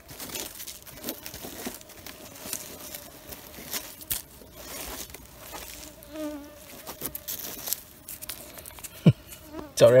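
Mosquitoes whining around the microphone, a thin steady hum, over rustling and crackling of leaf litter and handling noise, with a sharp click near the end.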